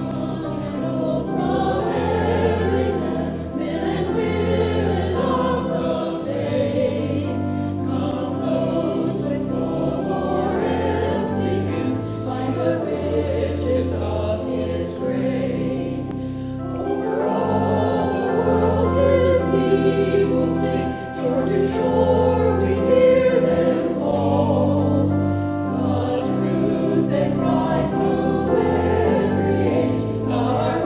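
Church choir of mixed voices singing an anthem together, over steadily held low accompanying notes.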